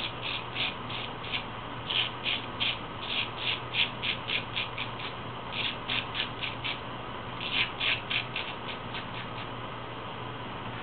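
Full-hollow-ground straight razor shaving stubble on the neck, each short stroke a crisp scrape, about three a second, in runs separated by brief pauses. The strokes stop shortly before the end.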